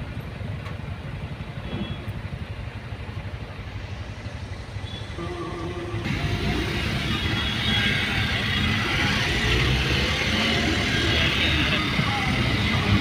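Engine and road noise heard from inside a Suzuki car's cabin, a steady low rumble that gets louder and brighter from about halfway through as the car drives on in traffic.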